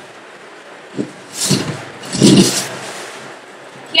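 A CPR training manikin being pulled out of its carry bag: a short knock about a second in, then two loud rustling, scraping bursts of handling.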